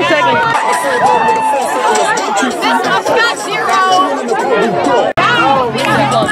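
Many children's voices shouting and chattering over one another, with no single speaker standing out. The sound breaks off for an instant about five seconds in.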